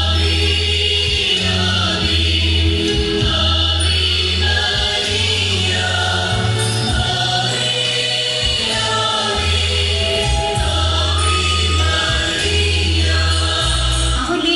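Choral church music: a choir singing a slow hymn-like piece over long, deep held bass notes that change every second or two.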